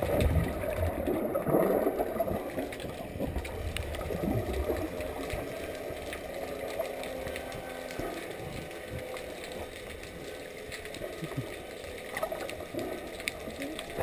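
Muffled underwater water noise on a submerged camera: bubbling and rushing water, loudest in the first two seconds, then a quieter steady low noise with scattered faint clicks.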